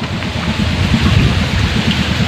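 Wind buffeting the microphone: a loud, steady, fluttering rumble with a hiss above it.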